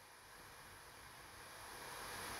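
Near silence: faint room tone and hiss, slowly growing a little louder.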